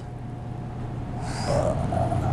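Wire whisk moving through thick chocolate pancake batter in a glass bowl, with a brief wet squelch about one and a half seconds in, over a steady low hum.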